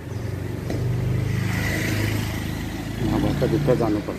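A motor vehicle engine running steadily close by, louder from about a second in, with a person's voice near the end.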